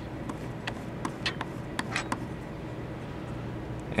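Soldering pencil tip wiped across a gauze pad to clean off excess solder: a handful of faint, irregular ticks and scrapes over a steady low hum.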